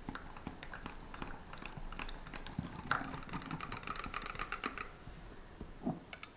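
A small wire whisk stirring melted gelatin and a scoop of cheesecake cream together in a glass mug, its tines clicking against the glass. The clicking quickens into a fast, even rattle about halfway through, then stops shortly before the end.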